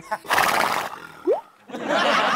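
A horse whinnying: a breathy burst just after the start, then a longer wavering cry beginning near the end. A short rising tone sounds between them, just past a second in.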